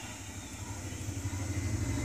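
A low, steady hum with a faint even hiss over it, in a pause with no speech.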